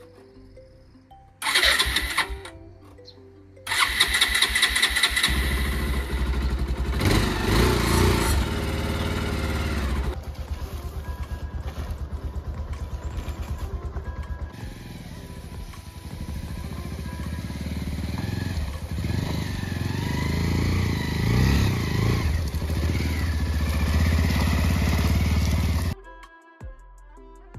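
Single-cylinder engine of a Bajaj Pulsar 220 motorcycle being started after sitting unused for two to three months. A first burst of cranking about a second and a half in dies away, and a second attempt a couple of seconds later catches. The engine then settles into running.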